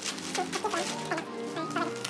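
Plastic packaging crinkling as a plastic bag and bubble wrap are handled, over background music. Through most of it runs a string of short rising-and-falling calls that sound like a chicken clucking.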